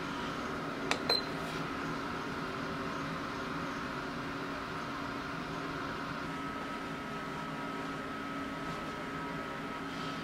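Two quick light clicks about a second in, fitting the push button of an ultrasonic essential-oil diffuser being pressed to switch it on, over a steady low hum. A faint steady high tone comes in about six seconds in.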